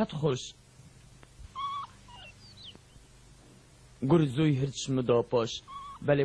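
A few short, faint, high-pitched animal calls, first a brief held note, then quick falling glides, heard in a pause between lines of dubbed cartoon dialogue.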